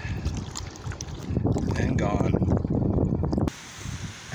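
Water sloshing and splashing around a hand as a bass is let go back into the river, with wind buffeting the microphone. The sound stops abruptly about three and a half seconds in.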